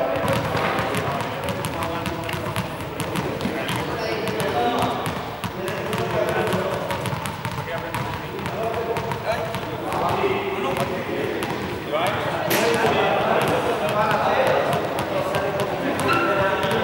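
Small juggling balls being tossed, caught and dropped onto a sports-hall floor, heard as many short knocks and bounces, with one sharper crack about three quarters of the way through. Indistinct voices echo in the hall under them.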